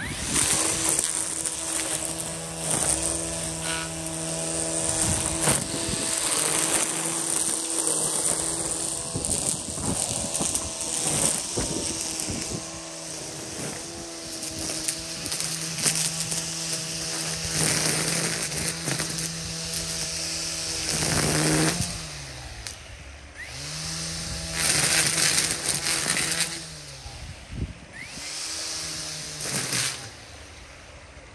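EGO battery-powered string trimmer running, a steady motor tone with the nylon line slapping and tearing through weeds. The motor slows and picks back up twice in the latter part.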